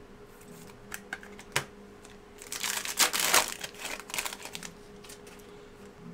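Trading cards being handled and slid against one another and against clear plastic: a few light clicks, then a spell of rustling and crackling around the middle.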